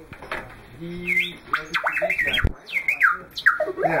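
R2-D2 astromech droid sounding its beeping, whistling voice through its speaker: a low beep about a second in, then a quick string of chirps that rise and fall, with a sharp click midway.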